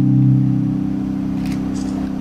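A held low organ chord from a stage keyboard sustaining and slowly fading, with a faint tick about one and a half seconds in.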